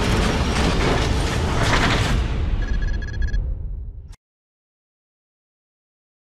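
Logo-animation sound effect: a dense, low-heavy noise like a cinematic impact that fades away over a few seconds, with a quick run of short electronic beeps near its tail. It cuts off to dead silence a little past the middle.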